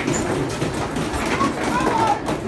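Mechanical horse-race arcade game running: a steady clattering rattle from the game, with voices over it.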